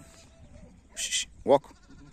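A sheep bleating once, a short rising call about one and a half seconds in, just after a brief hiss.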